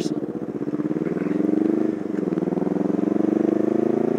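Kawasaki dual-carburetor twin motorcycle engine accelerating: its pitch climbs, drops about two seconds in, then climbs again.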